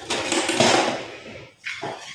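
Wire whisk scraping and rustling through dry cornstarch and sugar in a metal cooking pot. The rough scraping dies away about one and a half seconds in, followed by a short knock.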